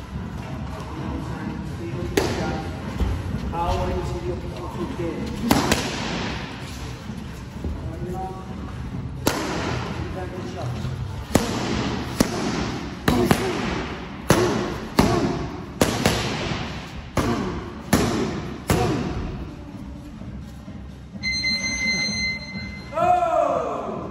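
Boxing gloves smacking into focus mitts during pad work: a few single punches at first, then quicker combinations of sharp smacks about half a second to a second apart. A steady beep sounds near the end.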